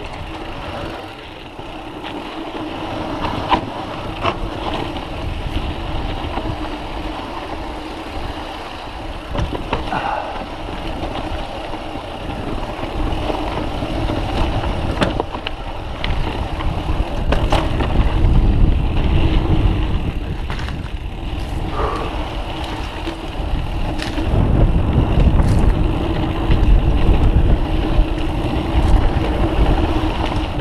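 Mountain bike descending a rough trail: continuous wind rush on the microphone with rattling and scattered sharp knocks from the bike over the ground. The low rumble of the wind grows louder in the second half.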